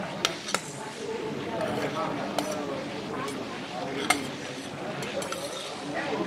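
Steel spoon clinking and scraping against a stainless steel plate as rice is scooped off it. There are several sharp clinks, the loudest about four seconds in.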